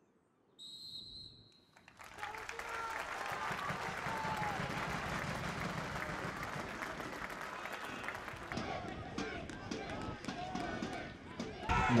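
A single referee's whistle blast, about a second long, breaks a minute's silence and signals its end. The crowd then breaks into applause mixed with voices, which carries on to the end.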